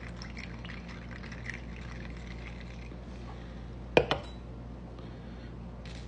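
Chocolate milk drink poured from a can into a glass over ice, a quiet trickle. About four seconds in come two or three sharp clicks.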